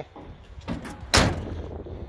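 The steel cab door of a 1965 Ford F250 pickup slammed shut once, a little over a second in, with a short rattle and ring after the bang.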